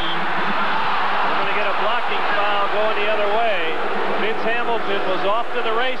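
Basketball arena crowd noise, a dense din of many voices with shouts rising out of it, heard through a television broadcast.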